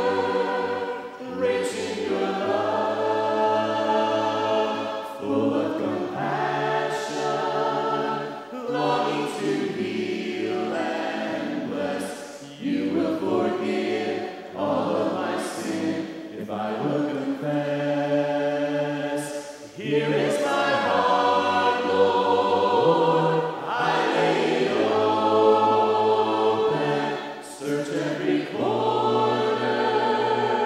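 Mixed group of men's and women's voices singing a slow worship song a cappella in harmony, line by line, with short breaks between phrases.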